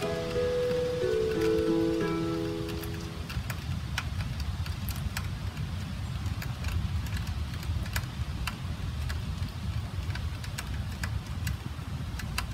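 Rain falling, with single drops ticking sharply and irregularly over a steady low rumble. Background music plays at first and ends about three seconds in.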